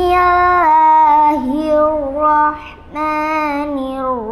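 A young girl's voice reciting the Quran in the melodic tilawah style, holding long ornamented notes, with a short breath pause about three seconds in.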